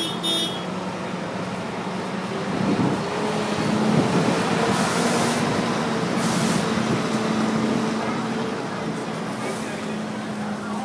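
Heavy truck with a trailer driving slowly past close by, its diesel engine running and getting louder as it draws level, then easing off. Two short hisses come around the middle of the pass.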